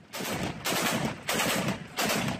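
Machine gun mounted on a pickup truck firing in short bursts of rapid shots, four bursts of about half a second each in quick succession.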